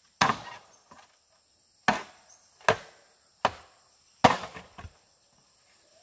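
A machete chopping into bamboo: five sharp, irregularly spaced chops with a couple of lighter knocks. The loudest chop comes just past four seconds in. Insects are droning faintly and steadily in the background.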